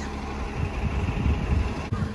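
City bus pulling away from the curb, its engine a steady low rumble.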